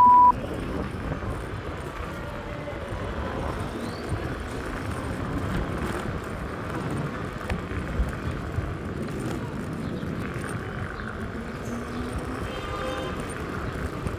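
Steady rumble and rattle of an electric scooter's tyres running over a paving-stone street, with one sharper knock about eight seconds in.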